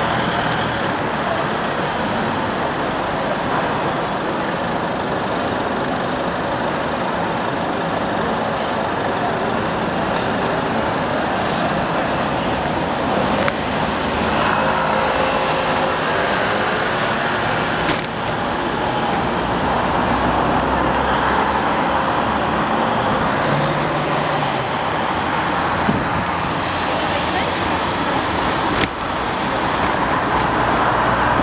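City street traffic noise, steady, with passing cars and indistinct voices of people on the pavement, and a few short knocks along the way.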